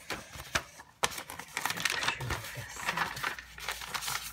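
Plastic sticker sheets and their wrapping crinkling and rustling as they are handled and pulled apart, with a few sharp clicks in the first second, then dense crackling to the end.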